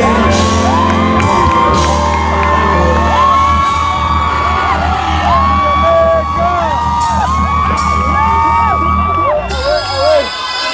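Live hip-hop music over a concert PA: a heavy bass beat with voices singing and whooping over it. The bass cuts out about half a second before the end.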